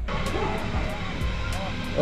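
Electric potter's wheel running with a steady drone while a clay pot is thrown on it, under background music with a light beat and faint voices.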